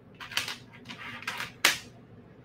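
Glass beads clicking against each other and the tabletop as they are handled: a handful of short, irregular clicks, the sharpest near the end.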